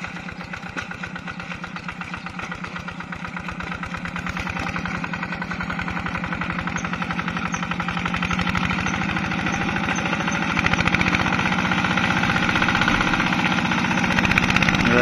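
A two-wheel hand tractor's single-cylinder diesel engine running steadily with an even, rapid beat, growing louder as it works through the flooded paddy.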